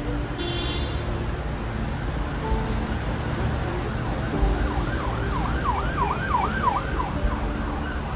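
Road traffic rumbling steadily, with an emergency vehicle siren joining about halfway through in a rapid up-and-down yelp, about three cycles a second, for a few seconds.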